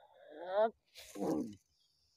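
Two acted cries of pain from a person. The first is a strained yell that rises in pitch; the second, just after a second in, is a louder, rough, growling shout.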